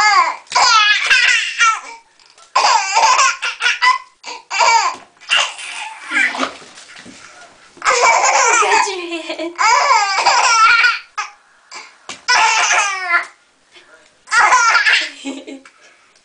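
Baby laughing in repeated high-pitched fits, each a second or two long with short pauses between.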